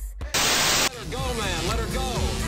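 A burst of loud static hiss lasting about half a second, then a wavering voice whose pitch slides up and down.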